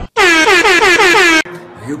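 A man's very loud, wavering yell, its pitch wobbling up and down about six times a second. It starts suddenly and stops abruptly after about a second and a quarter.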